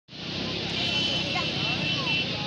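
Busy beach ambience: a steady rushing hiss with faint voices of people around, and a thin high steady tone through the middle of it.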